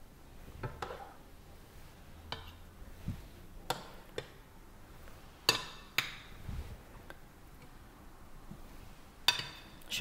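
A metal spoon clinking against a plate while duck pieces are spooned onto it, in scattered single clinks. The sharpest two come about five and a half and six seconds in, and another near the end.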